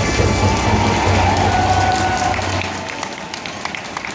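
Crowd din in a packed baseball stadium, a dense wash of many voices, with a low boom under it through the first half that drops away, and the noise easing off toward the end.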